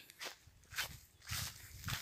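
Soft footsteps through dry grass, four short rustles about half a second apart.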